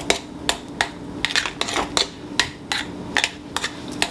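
A utensil stirring thick mashed potatoes in a glass bowl, knocking against the glass in sharp, irregular clicks about three times a second.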